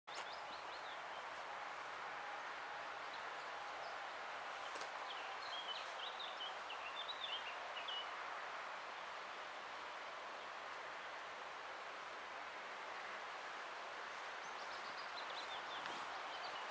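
Faint outdoor ambience: a steady wash of background noise with small birds chirping briefly near the start and in a run of quick chirps between about five and eight seconds in.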